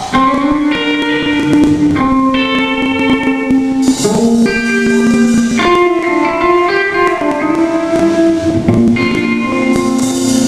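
Live rock band with electric guitars, bass and drums starting a song. Held electric-guitar chords change every second or two, with a cymbal-like splash about four seconds in and again near the end.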